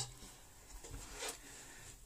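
Quiet room tone in a pause, with one faint, brief soft sound about a second in.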